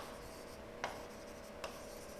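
Marker pen writing on a board: a few short, separate strokes, faint, over a steady low hum.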